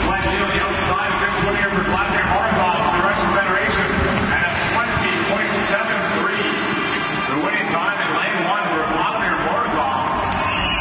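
A man's voice talking continuously over the steady noise of an indoor swimming-pool arena.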